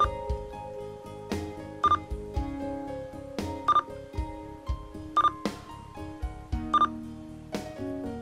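Five short, high beeps from a President Harry III CB radio's key-beep, about one every second and a half, as it steps through its band-standard settings. Background music with a steady beat plays underneath.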